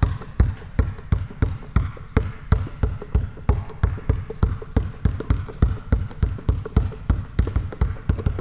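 A basketball bouncing low and fast on a hardwood court in a spider dribble. The ball is kept in one spot while the hands alternate, giving a steady rhythm of about three bounces a second.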